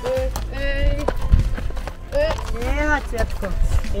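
A horse's hoofbeats on a dirt path as it is led at a walk, with voices over them.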